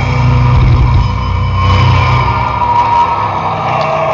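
Live heavy metal band holding out the song's final distorted chord over a rapid drum roll on the kick drums, loud and sustained as the song ends.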